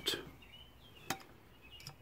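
Quiet room with a single faint, sharp click about a second in and a couple of softer ticks near the end.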